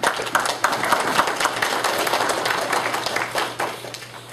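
Audience applauding: a dense patter of many hands clapping that dies away near the end.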